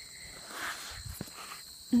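Sneaker scuffing and scraping against a large rubber truck tyre as someone climbs it, with a couple of light knocks about a second in. A steady high insect drone runs underneath.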